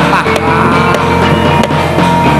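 Loud live music playing for a jaran kepang (kuda lumping) dance, with held tones over a steady low bass and a few sharp drum hits.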